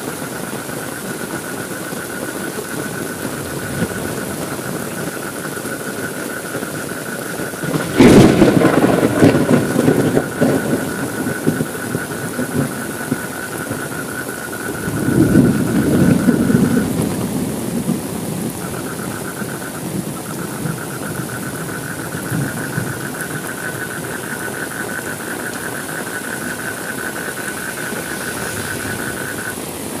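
Steady heavy rain with thunder. A sharp thunderclap about eight seconds in rolls away over a few seconds, and a second, softer rumble comes about fifteen seconds in.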